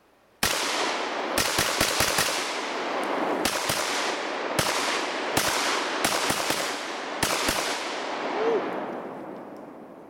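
Saiga 12 semi-automatic 12-gauge shotgun firing a rapid, uneven string of about a dozen shots of 00 buckshot from a 20-round drum, starting about half a second in and stopping after about seven seconds. Each blast is followed by a long echo that dies away near the end.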